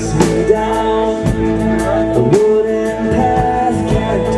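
Live rock band playing a song: a male lead vocalist singing held notes over guitar and drum kit.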